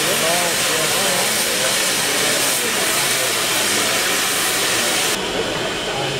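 Safety valves of the GWR Castle Class 4-6-0 steam locomotive no. 7029 Clun Castle blowing off: a loud, steady hiss of escaping steam, the sign that the boiler has reached full working pressure while the engine stands. The hiss stops abruptly near the end.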